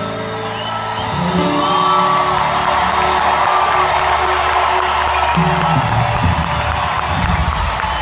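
Arena crowd cheering and whooping, swelling about a second in, as the band's last held notes of a live pop song ring out beneath it.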